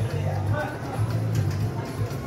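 Electronic slot-machine music with a loud, pulsing bass line, played by a Bell Link slot machine while it sits in its bell-collecting bonus round.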